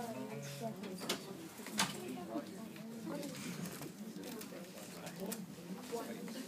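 Indistinct low voices murmuring among the audience, with a few sharp clicks.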